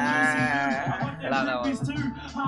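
A man's voice holding one long, drawn-out note for about a second, then breaking into rapped words over a hip hop beat.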